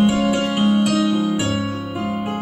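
Piano playing a slow instrumental passage of a Scottish folk song between sung verses: held chords, with a new low bass note coming in about one and a half seconds in.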